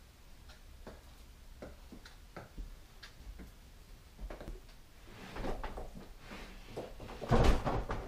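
A few light knocks and handling noises, then a large wooden tabletop panel scraping and bumping on a workbench as it is grabbed and lifted, loudest about seven and a half seconds in.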